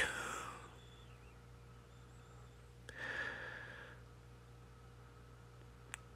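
Near silence, with a person's faint breath: a soft click about three seconds in, then a short exhale that fades away.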